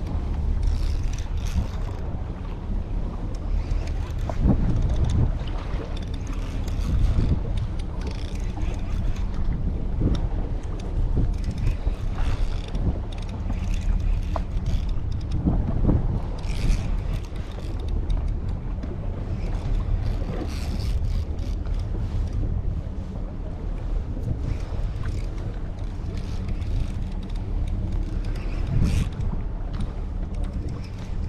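Wind rumbling steadily on the microphone aboard a boat at sea, with scattered short knocks from handling of the rod and reel.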